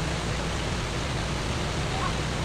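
Steady low rumble and hiss of a docked car ferry's engines running, with no distinct events.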